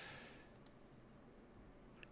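Near silence with one faint, short computer mouse click a little over half a second in.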